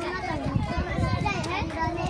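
A group of young children chattering and calling out at once, many high voices overlapping.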